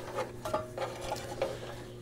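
Faint handling noises: a power cord being fed through a slot in a jukebox's rear door, with a few light clicks and scrapes.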